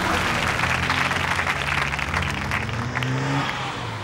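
Audience applause, a dense steady patter, over a small car engine whose pitch rises for about three seconds as it accelerates.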